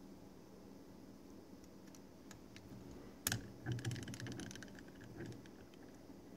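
Metal clicks and light rattling from an engraving ball vise being handled as its jaws are slid along the T-slot and clamped at a new position: one sharp click about halfway through, then a couple of seconds of small clicks.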